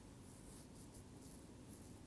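Near silence: faint room tone, with a few faint, brief high scratchy sounds about half a second in and near the end.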